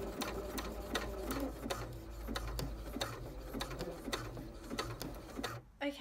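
Domestic sewing machine stitching elastic onto fabric: a steady run of needle clicks over the motor's hum, stopping suddenly near the end.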